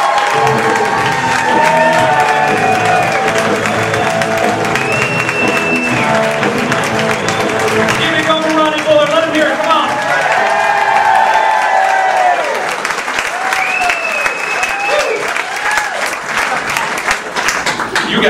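Audience applauding over recorded music with a singing voice; the clapping thins out about two-thirds of the way through while the music plays on.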